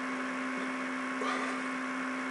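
Steady low electrical hum with background hiss, the recording's noise floor, with no other sound on top.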